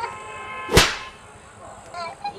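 A single sharp swish like a whip crack, about three quarters of a second in, over a faint steady ringing tone that fades out soon after. It is most likely a comic whoosh effect laid over a tense stare-down.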